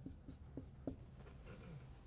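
Dry-erase marker writing on a whiteboard: a few short, faint strokes as letters are drawn.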